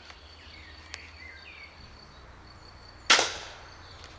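An EK Archery Adder repeating pistol crossbow with 190-pound Venom limbs firing a single bolt about three seconds in: one sharp, loud snap of string and limbs with a short ringing tail. A faint click comes about a second in.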